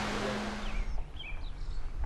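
A large electric floor fan running with a steady hum and hiss, which cuts off about a second in. Then come a few short bird chirps over a low wind rumble on the microphone.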